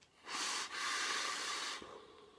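A long inhale through a vape atomizer on a box mod: air and vapour hiss through the drip tip for about a second and a half, with a brief catch near the start.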